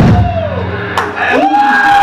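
A live rock band's final note cuts off just after the start, followed by audience whoops and shouts in a bar room, with a sharp knock about a second in.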